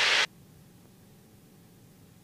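A click and a short burst of radio static that cuts off suddenly as an aircraft radio transmission ends (the squelch tail), followed by a faint steady low hum.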